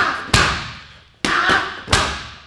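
Gloved hooks and a low kick landing on a super heavy punching bag: four heavy thuds in under two seconds, in two quick pairs, each dying away with a short echo in the room.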